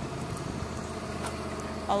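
A motor vehicle engine running steadily in the background: a low, even hum with faint steady tones.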